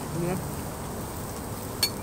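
Meat sizzling on an electric tabletop grill, a steady hiss throughout. A short voiced 'mm' comes just after the start, and a single sharp click sounds near the end.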